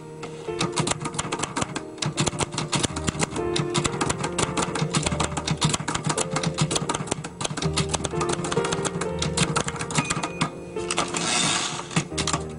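Background music: sustained keyboard notes under a fast, uneven run of sharp clicks, with a short swell of hiss near the end.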